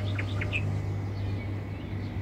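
Birds chirping: a few short, high chirps in the first half, over a steady low hum.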